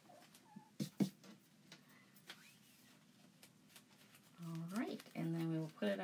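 A few light taps and clicks as a plastic silk screen stencil is handled and laid onto a board, the loudest about a second in, then a woman speaking from about four and a half seconds in.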